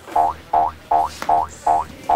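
Comic sound effect: a short pitched tone sliding upward, repeated evenly about five times, roughly two and a half per second.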